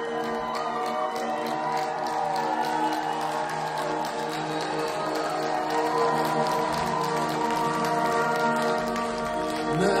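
Live rock band playing an instrumental passage: held chords under a steady ticking beat. The lead vocal comes back in just before the end.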